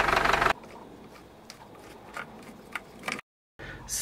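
Yanmar 4LH four-cylinder marine diesel running steadily for about half a second, then cutting off abruptly. After that there is only faint low background noise with a few light clicks, and a short moment of total silence near the end.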